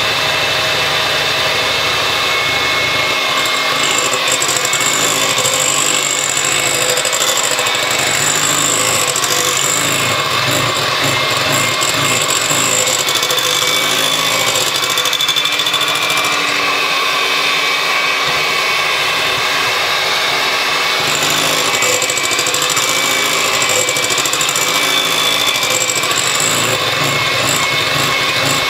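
Electric hand mixer running steadily, its twin beaters whisking beaten egg whites as egg yolks are added, with a steady motor whine.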